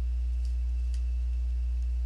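Steady low electrical hum with a stack of evenly spaced overtones, and a faint thin high whine above it.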